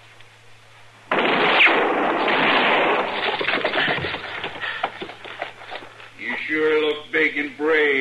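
A sudden loud gunshot-like blast about a second in, trailing off over a couple of seconds amid clattering. From about six seconds in, a horse whinnies repeatedly. These are radio-drama sound effects.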